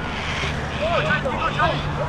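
Distant voices of football players and spectators calling out across an open pitch, a few short shouts in the second half, over a steady low rumble.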